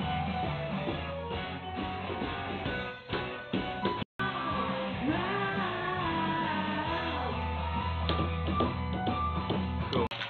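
A hard rock song with electric guitar and a woman singing. The sound cuts out completely for a moment about four seconds in, then the music comes back with the voice gliding between held notes.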